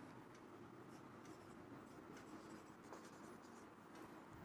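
Near silence: faint scratching of a marker pen writing on a whiteboard, in a few light strokes.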